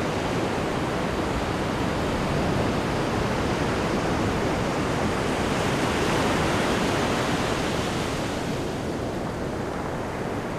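A steady rushing noise that swells slightly midway and eases off toward the end.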